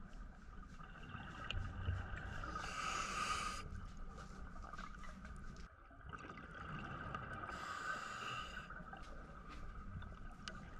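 A scuba diver breathing through a regulator underwater: two long breaths about five seconds apart, each a rush of hiss and bubbling, over a steady low underwater rumble.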